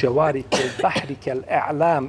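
A man's voice speaking throughout, with a short, harsh, throaty noise about half a second in.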